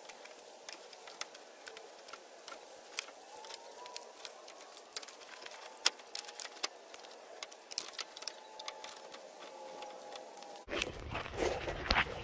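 Scattered light clicks and knocks of hands working on a pickup's radiator, its fittings and the plastic shroud clips while pulling the radiator out, over a faint steady hiss.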